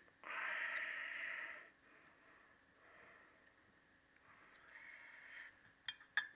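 A man breathing close to the microphone: one long exhale lasting about a second and a half, then two fainter breaths.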